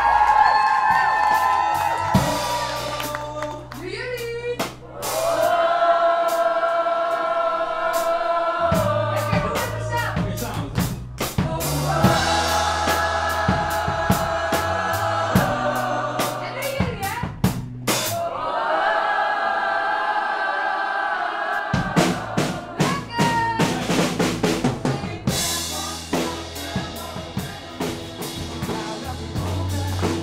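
Band music: a drum kit with kick and snare, a bass line and held chords that change every few seconds. The drumming gets busier in the last third.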